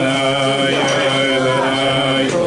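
A group of men singing a slow Hasidic melody (niggun) together, in long held notes.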